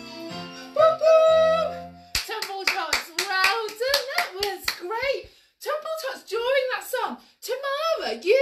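A recorded children's song with a bass line and singing ends about two seconds in. A woman then claps her hands rapidly for about three seconds while talking.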